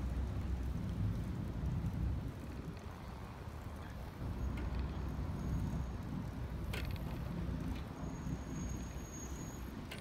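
Steady low rumble of riding a bicycle across asphalt: wind on the microphone and road noise from the rolling bike, with a single faint click about seven seconds in.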